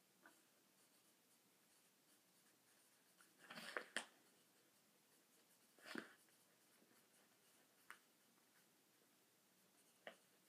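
Pencil writing on a workbook page on her lap, mostly near silence, with a short stretch of scratching ending in a click about three and a half to four seconds in, another short scratch around six seconds, and a small tick near eight seconds.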